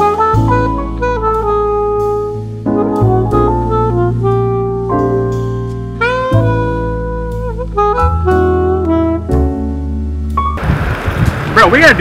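Background jazz music: a horn melody with bending notes over a steady bass line. Near the end the music cuts off abruptly to steady outdoor noise and a man's voice.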